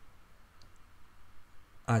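Quiet room tone with a faint computer-mouse click about half a second in, before a man's voice starts near the end.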